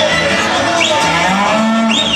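Hereford cows and calves mooing, with a couple of short rising calls in the second half.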